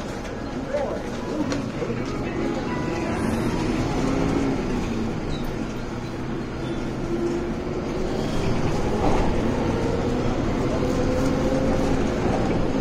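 Inside a moving city bus: the engine and drivetrain run under a steady low rumble. A whine slowly rises in pitch through the second half as the bus gathers speed. Voices are heard faintly in the background.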